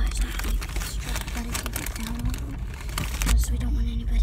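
Steady low rumble of a moving truck heard from inside a box, with crinkling and rustling of a snack wrapper and soft murmured voices.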